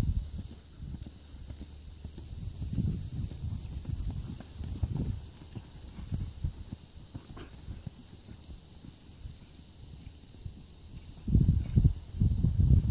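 Hoofbeats of a two-year-old horse loping on arena sand: soft, irregular thuds. A much louder low rumble comes in near the end.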